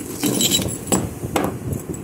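Broken pieces of a shattered MEDA abrasive grinding wheel clinking and knocking against each other and the floor as they are handled, several sharp clinks in under two seconds.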